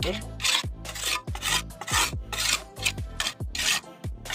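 Steel mason's trowel scraping and rubbing over wet cement in quick repeated strokes, about three a second, as the top of a freshly cast concrete block is smoothed and finished.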